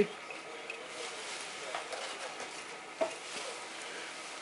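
Faint, light metallic clinks and taps of small steel bolts being handled and threaded by hand into the oil pump housing on an engine block, with one sharper click about three seconds in.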